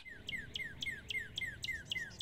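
Northern cardinal singing: a fast, even series of short down-slurred whistled notes, about six a second.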